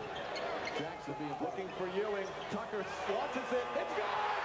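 Old television broadcast audio of an NBA game: arena crowd noise with voices, and a basketball bouncing on the court as the ball is inbounded with a tenth of a second left.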